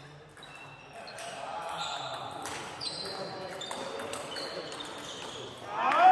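Table tennis balls clicking off bats and the table at irregular intervals, some hits leaving a short high ring in the hall. Voices murmur in the background.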